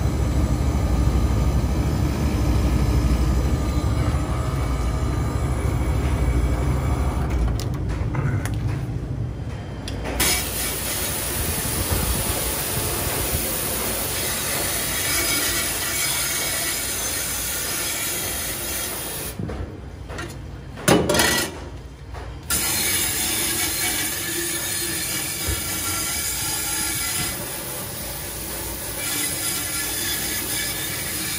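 Commercial refrigeration equipment running with a steady mechanical noise, deep and low in the first several seconds. The sound thins out briefly twice, and there is one short loud knock about two-thirds of the way through.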